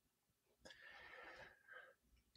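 Near silence, with a very faint sound carrying a thin steady tone for about a second in the middle.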